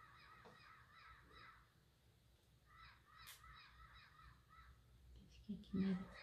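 Faint bird calls: a run of quick, repeated calls for about a second and a half, then a second run about three seconds in. A single light click comes between them, and a short voice sound comes near the end.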